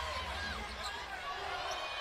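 Basketball arena sound during live play: crowd murmur with scattered faint voices over a low hum, and a basketball bouncing on the hardwood court.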